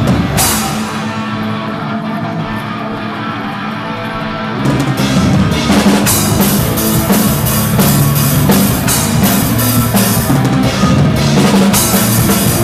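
Live rock band playing loud: a quieter stretch without cymbals, then the drums and cymbals come back in with the full band about four and a half seconds in.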